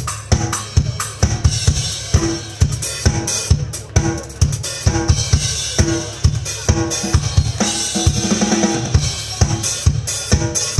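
Pearl drum kit played live: bass drum, snare and toms struck in quick succession under ringing cymbals, with a denser run of drum hits near the end.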